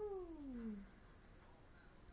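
A baby's single short vocal coo, under a second long, sliding steadily down in pitch at the start, then quiet.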